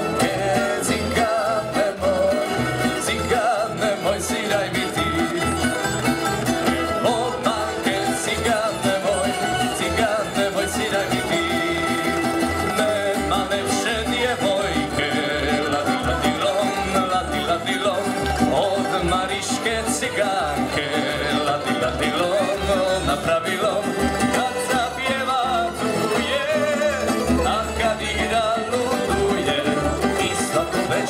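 Tamburica ensemble playing a Croatian folk tune live: several plucked tamburicas carry the melody over a plucked double bass that keeps a steady beat.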